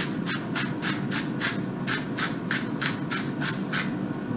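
Hand salt grinder being twisted, grinding coarse pink Himalayan salt in a rapid, even run of rasping strokes, about four or five a second.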